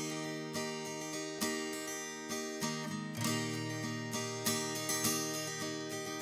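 Acoustic guitar playing a slow intro, picked chords ringing out one after another, with a change to a fuller, lower chord about halfway through.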